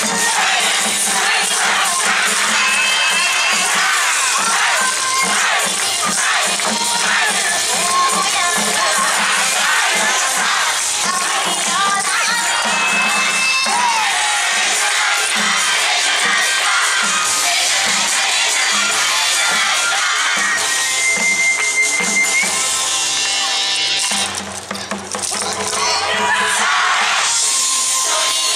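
Yosakoi dance music played loud over speakers, with a large troupe of dancers shouting calls together and the clacking of wooden naruko clappers in their hands. The music thins out briefly about four seconds before the end, then comes back full.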